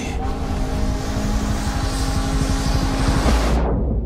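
Loud rushing noise of a motorboat speeding over open water, with a low engine rumble under a steady held musical drone; the hiss falls away in a downward sweep shortly before the end.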